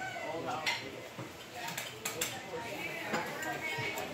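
Diner background: indistinct chatter of other customers, with sharp clinks of dishes and cutlery several times.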